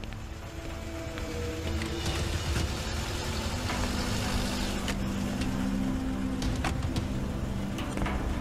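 A car drives up and stops, its engine and tyre noise growing louder over the first couple of seconds, under background music. A few sharp clicks come in the second half.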